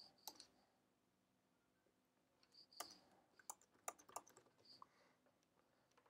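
Faint computer keyboard keystrokes: a couple of clicks near the start, then a quick run of several key presses about halfway through, as blocks of code are pasted in.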